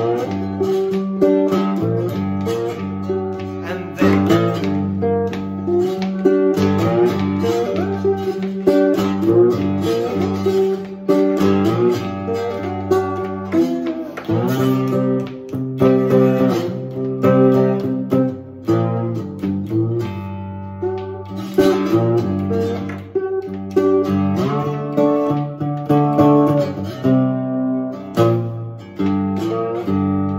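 Three-string cigar box guitar played with a metal slide: a picked blues riff over steady low droning notes, some notes gliding in pitch.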